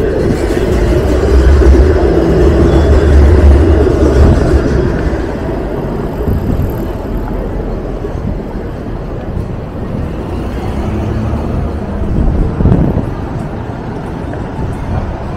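A Toronto streetcar (Flexity Outlook) passing close by on its tracks, its rumble loudest over the first few seconds and fading by about five seconds in. Steady city traffic noise continues underneath.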